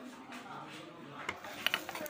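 Low background noise, then a few light clicks and rattles in the second half as the LCD monitor panel and its cable are handled.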